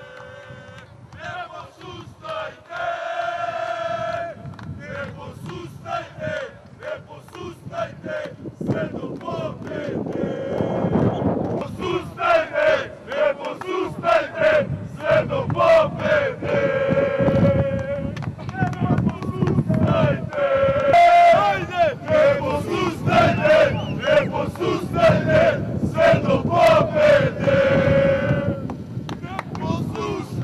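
A small group of football supporters chanting and singing together, voices held on long notes, getting louder about halfway through.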